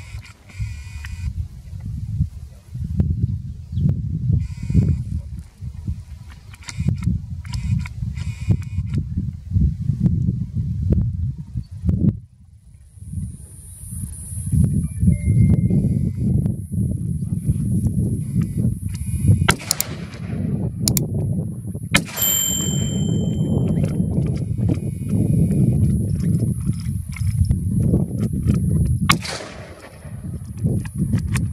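Wind rumbling on the microphone, with a few sharp cracks standing out from it: two close together about two-thirds of the way in, and one near the end.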